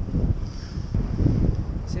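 Wind buffeting the camera microphone of a paraglider in flight: a steady low rumble with a faint hiss, and no clear tones.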